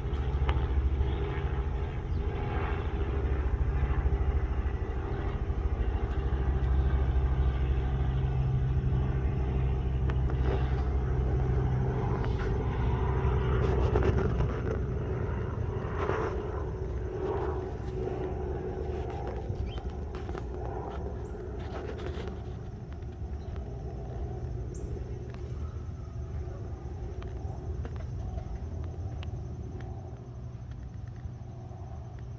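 A low engine rumble, steady and loud for the first half, easing off after about fourteen seconds.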